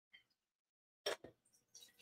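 A faint click, then a sharp double knock about a second in and a short rustle near the end: a cup being handled against a refrigerator door's water dispenser.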